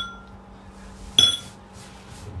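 A spoon clinking against a ceramic bowl: a ringing clink at the start and another, sharper one a little after a second in.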